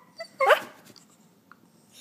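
A dog giving one short, sharply rising whine-yelp about half a second in, a frustrated begging cry for a toy she can't get at.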